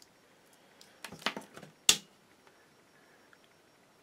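Small clicks and rattles from the computer power supply's wires and connector being handled, then one sharp click just before two seconds in.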